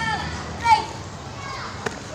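Children's voices calling out in short snatches, with one sharp knock near the end.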